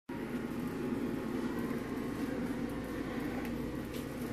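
Steady low hum of large-room ambience, with a few faint clicks over it.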